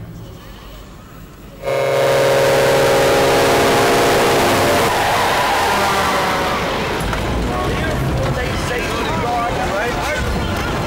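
A vehicle horn blares suddenly about two seconds in and is held for about three seconds. It gives way to a loud, noisy crash-like din with a deep rumble.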